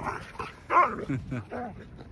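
Huskies barking and yipping in a few short calls as they play, chasing each other on sand.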